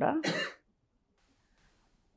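A woman clearing her throat once, briefly, right at the start.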